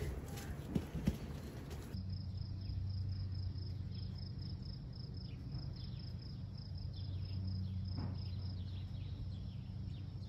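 Outdoor ambience: an insect chirping steadily, about three short high chirps a second, over a low steady hum, with a few brief bird chirps. A couple of soft knocks about a second in.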